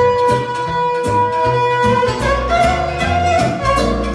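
Live violin playing lead over a band with a steady beat and bass. The music holds one long note for about the first two seconds, then moves on to shorter, quicker notes.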